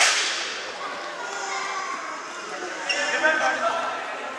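A sharp smack of a futsal ball struck hard, ringing out in the echo of a large sports hall and dying away within about half a second, followed by players' shouts.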